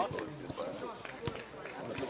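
Background voices of players talking, with a few soft thuds of a football bouncing and rolling back across artificial turf.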